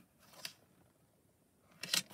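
Faint handling clicks of a hinged stamping platform: a small tick about half a second in, then a short cluster of clicks near the end as the clear door is swung open off the paper.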